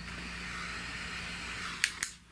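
Steady hiss with a faint low hum, and one short click near the end.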